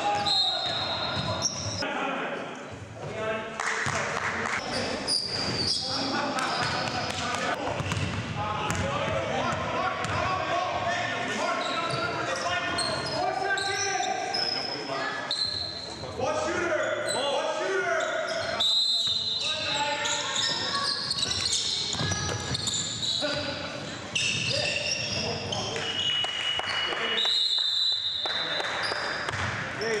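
Basketball game in a large gym: a ball bouncing on the hardwood floor, sneakers squeaking in short high chirps, and players' voices calling out indistinctly.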